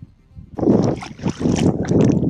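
Hands splashing and rinsing in the water of an ice-fishing hole, starting about half a second in: a run of irregular loud splashes and sloshes, with water dripping back into the hole.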